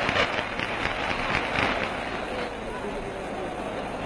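Crowd noise from a bullring audience: a steady hubbub with scattered clapping on an old newsreel soundtrack.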